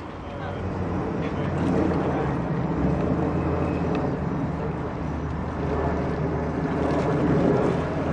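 Several people talking at once, indistinct, over a steady low drone.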